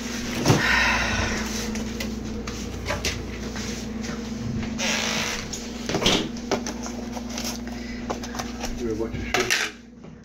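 Kitchen handling noises: scattered knocks and clicks of cookware and a plastic food container being handled, with rustling, over a steady low hum.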